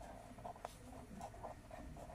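Pen writing by hand on paper: faint, short scratching strokes, with one sharper tick about two thirds of a second in.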